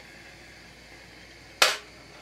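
Propane torch flame hissing steadily at a brass annealer. About one and a half seconds in comes a single sharp metallic clank, typical of an annealed brass case dropping off the wheel into the stainless steel catch tray.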